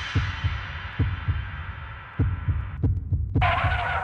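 Heartbeat sound effect: a low double thump repeating about every second, under a high hissing swell that fades away. A brighter, ringing effect comes in near the end.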